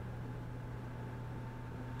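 Room tone: a steady low hum with a faint even hiss and a thin, constant higher tone.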